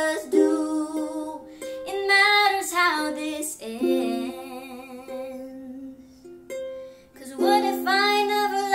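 A concert ukulele playing with a girl's singing voice over it. The music thins out and quietens past the middle, then the singing comes back strongly near the end.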